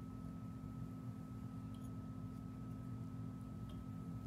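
Quiet room tone: a steady low hum with a thin, faint high-pitched tone over it, and a couple of faint ticks.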